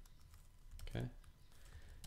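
A few scattered keystrokes on a computer keyboard, typing out a line of code.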